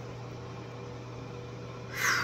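Steady low hum with a light, even hiss, the room's constant background noise.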